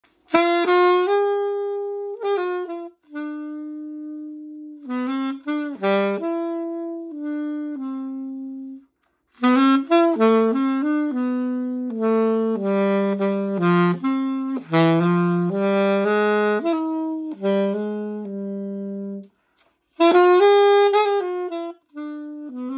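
Solo saxophone, unaccompanied, playing a slow melody of held notes in phrases, with short breaks for breath between them.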